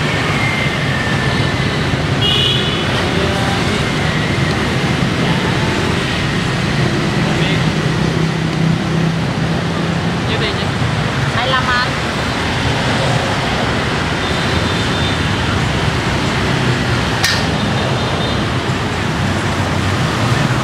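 Steady city street traffic, motorbikes and cars passing close by, with one sharp click about three quarters of the way through.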